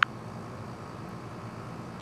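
Steady faint background hiss, with one short sharp click at the very start.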